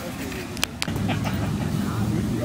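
Two sharp knocks from a handheld camera being swung, over faint background voices and a steady low hum.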